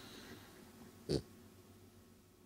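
French bulldog giving one short snort about a second in.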